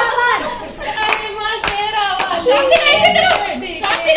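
Girls and women talking excitedly over one another, with sharp hand claps at uneven intervals.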